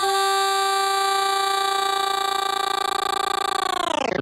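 One long held electronic synth tone, steady in pitch, that starts to bend downward near the end as the track closes out.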